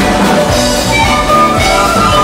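Live Andean folk band playing an upbeat dance tune, with a steady drum beat under held melody lines.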